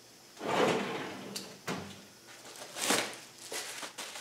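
A plastic mailer bag of parts being handled and opened, rustling and crinkling in a couple of bursts, with a few sharp clicks.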